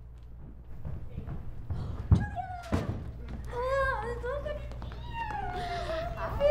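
A loud thunk about two seconds in and a second, lighter knock just after, over a steady low hum. From about three and a half seconds, high-pitched voices call out with rising and falling pitch.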